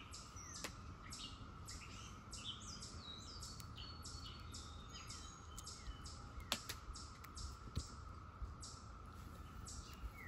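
Birds chirping over and over, faint: many short, quick falling chirps, with a few light clicks now and then.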